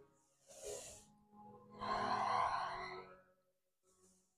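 A woman breathing audibly: a short inhale about half a second in, then a longer, louder exhale from about two seconds to three.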